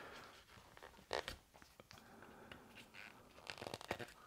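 Faint handling of a turned wooden speaker body: light rubbing of wood in the hands, a short knock about a second in and a cluster of small wooden clicks near the end, as wooden legs are test-fitted into drilled holes.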